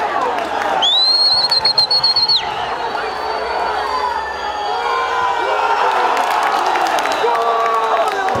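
Stadium crowd shouting and cheering during an attack on goal, with one long, high whistle blast about a second in that lasts about a second and a half. The shouting swells in the second half, with scattered claps.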